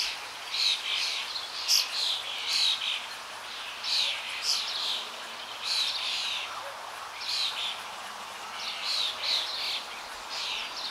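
Birds chirping in short bursts of high notes that recur every second or so, over a steady hiss.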